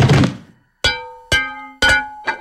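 A thud, then a Corelle glass dinner plate striking a hard floor three times about half a second apart, each strike ringing and fading as it bounces without breaking.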